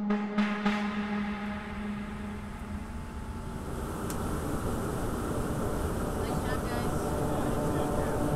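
A steady rushing noise on the flight deck of a KC-10 in flight, growing slowly louder. A held musical tone fades out over the first few seconds.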